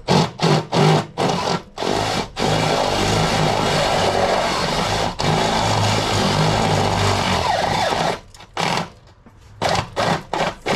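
Electric drill with a step drill bit boring a hole through sheet-steel car frame. It starts with a few short trigger bursts, then runs in one continuous cut for about five seconds, then gives short bursts again near the end.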